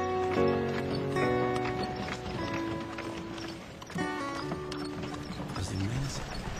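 Film score music playing over horses' hooves clip-clopping.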